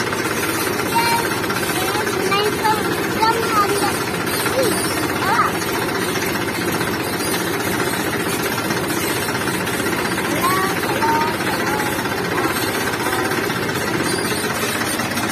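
A farm tractor's diesel engine running steadily while the tractor is driven.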